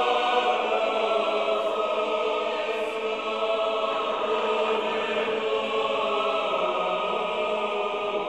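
Choir singing slow, sustained chords in a chant-like style.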